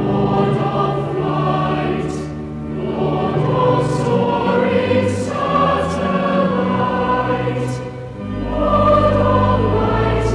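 Cathedral choir singing a hymn in slow, sustained lines, with organ accompaniment holding low pedal notes beneath. There are short breaks between phrases about 2.5 s in and again about 8 s in.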